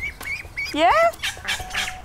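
White domestic ducklings peeping in short, high chirps, a few near the start and more in the second half.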